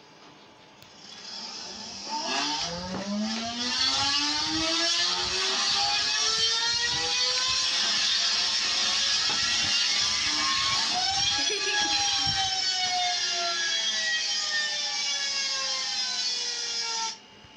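A small motor whirring with a high whine. After a quiet start it spins up, its pitch rising steadily for several seconds, and after a brief clatter about eleven seconds in the pitch slowly falls.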